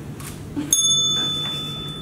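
A timekeeper's bell struck once, about two-thirds of a second in, ringing on with a high, clear tone that slowly fades. This single ring is the signal that a debate speaker's first minute is up.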